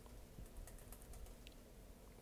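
Near silence: room tone with a few faint, scattered clicks in the first half.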